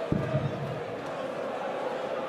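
A steel-tipped dart thuds into the dartboard just after the start, with a smaller knock a moment later, over the steady murmur of a large crowd.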